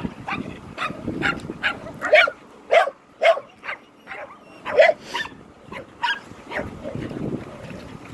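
A dog barking in a string of short, sharp barks at an irregular pace, with the loudest barks in the middle.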